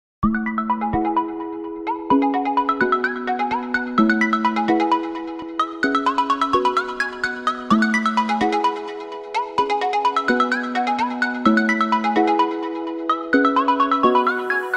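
Background music: a bright, chiming melody of quick struck notes over held low notes, repeating in a steady cycle, starting a moment in.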